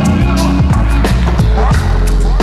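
Vaporwave music: a steady drum beat over deep bass, with pitched notes that slide between pitches.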